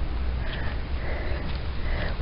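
Quiet outdoor background with a steady low rumble and faint hiss, no distinct event.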